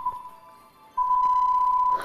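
Quiz-show countdown timer: a short electronic beep, then about a second later one long steady beep at the same pitch, marking that the time to answer has run out.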